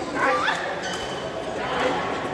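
A woman's short, high-pitched yelp, bending up and down in pitch, about a quarter second in, as she lunges for a low shuttlecock; background voices echo in a large sports hall.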